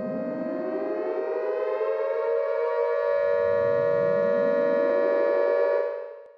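Intro sound effect under a channel logo: a held tone with two rising sweeps that wind up and level off like an air-raid siren, fading out near the end.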